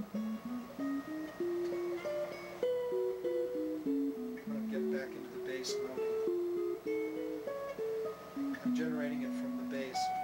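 Telecaster-style electric guitar played fingerstyle in a Baroque-style improvisation: single notes in two interwoven lines, a lower line and an upper line moving mostly by step, with some notes held for about a second.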